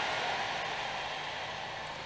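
A steady, even hiss of background noise, slowly fading, with no single voice or sound standing out.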